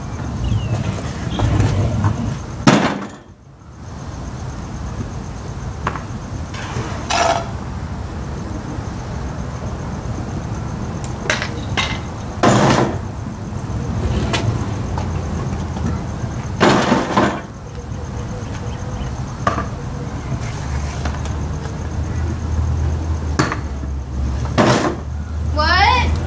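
Pro scooter knocking and clattering on concrete: several sharp impacts of wheels and deck landing, the strongest about three seconds in and again around twelve and seventeen seconds, over a steady background hiss.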